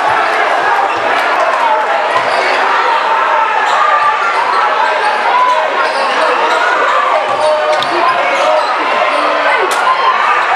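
A basketball being dribbled on a hardwood gym floor over the steady chatter of many spectators, echoing in a large gymnasium.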